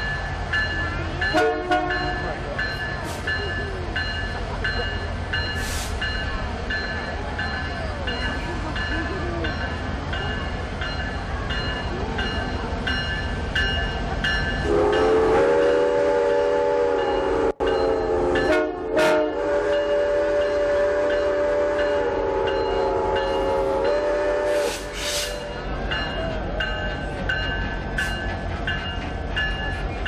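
Canadian Pacific Holiday Train's diesel locomotive passing, with a steady low engine rumble and a bell ringing in a fast, even beat. Its chord horn gives a short toot about a second and a half in. From about halfway it sounds a long blast of roughly ten seconds, broken twice briefly.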